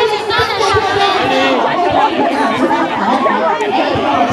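Speech only: many people talking over one another, crowd chatter.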